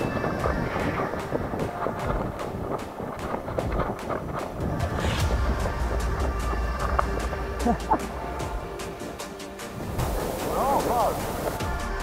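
Wind buffeting the camera microphone during a running forward launch with a paraglider wing overhead. The low wind noise drops away about ten seconds in. Background music plays underneath.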